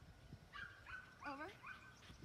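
Small agility dog giving a few short, high yips as it works the course, faint, with a brief call from the handler in between.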